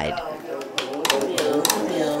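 Footsteps knocking on a makeshift wooden staircase, several sharp clicks about a second in, under a person talking in a small room.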